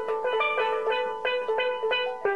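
Steel pan struck with rubber-tipped mallets, playing a made-up melody of single ringing notes, several a second.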